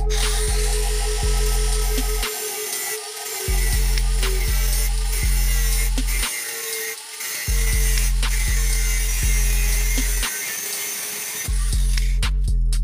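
Electric angle grinder with its disc run against a plywood box, a steady high grinding hiss whose motor tone wavers as it bites, stopping just before the end. Loud background music with a heavy beat plays over it and drops out briefly three times.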